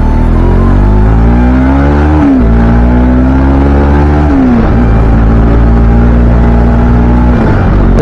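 Motorcycle engine accelerating through the gears: the revs climb, fall back at two upshifts about two and four and a half seconds in, then hold steady at cruise before easing off near the end.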